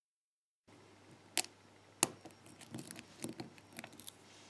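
Lock pick and tension wrench working the pin tumblers of an aluminium ABUS Titalium padlock: a sharp metallic click about a second and a half in, another at two seconds, then a run of small faint clicks as pins set and the plug turns into a deep false set.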